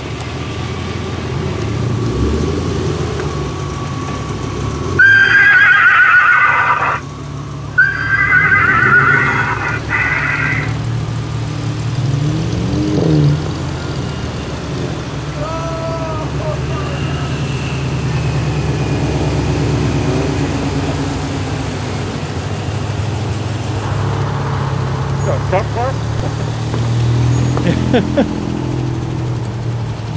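Cars driving past slowly one after another, engines running with a steady low drone. Two loud, high-pitched, wavering squeals, the first about five seconds in and the second about eight seconds in, each lasting about two seconds, stand out as the loudest sounds.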